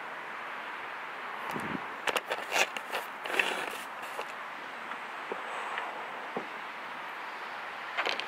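Steady outdoor background hiss with a handful of light clicks and knocks about two to three and a half seconds in, and a single low thump just before them, from a handheld camera being moved about.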